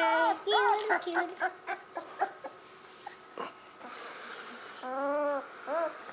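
Young puppy whimpering and fussing while being picked up and handled, a few short whining cries with the longest about five seconds in.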